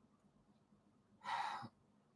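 Near silence, then one short breath from a man, about half a second long, a little past halfway through.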